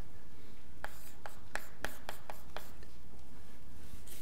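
Chalk writing on a blackboard: a quick run of short, sharp taps and scratches, about three a second, for a couple of seconds from about a second in.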